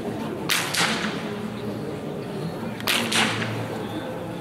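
Two blank pistol shots about two and a half seconds apart. Each is a sharp crack followed a quarter second later by an echo. This is the gun-sureness test during the heeling exercise of an IPO obedience routine, where the dog must keep heeling unbothered.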